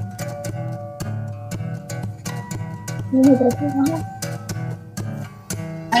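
Acoustic guitar played fingerstyle: a plucked melody over bass notes, with sharp note attacks and ringing tones.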